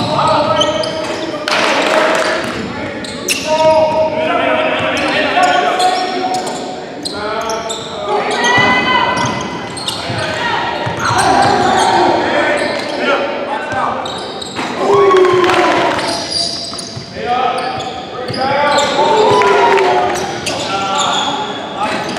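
Live basketball game sounds in a large echoing gym: players and coaches calling out over a ball bouncing on the hardwood floor.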